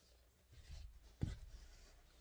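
A large sheet of drawing paper being lifted and handled, rubbing and rustling, with one sharp knock a little over a second in.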